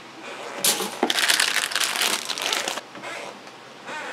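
Crinkling of thin plastic bags around model-kit sprues as plastic runners are handled, loudest through the first few seconds and then tailing off.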